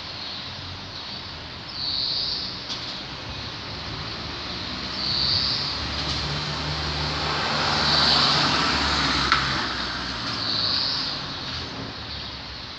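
Steady outdoor noise with a motor vehicle passing, swelling to its loudest about eight seconds in and then fading. A short high-pitched sound repeats roughly every three seconds over it.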